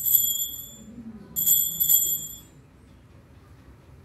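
Small altar bell rung twice at the elevation of the chalice, marking the consecration. Each ring is a clear, high chime that fades within about a second; the second comes about a second and a half after the first.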